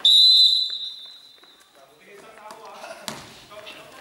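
Referee's whistle blown once, a sharp high blast at the start that fades out over a couple of seconds in the hall's echo, followed about three seconds in by a basketball bouncing on the hardwood gym floor.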